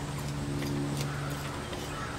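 A steady low hum with faint scratching and light tapping as a small metal fork combs soil out of a ficus bonsai's aerial roots. The hum eases near the end.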